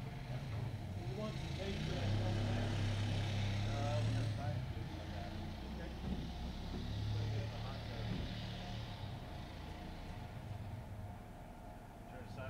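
A motor vehicle's engine running nearby, louder from about two to four seconds in and then easing off, with faint voices in the background.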